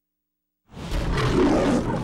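A loud animal roar for a crocodile, starting suddenly out of silence about two-thirds of a second in.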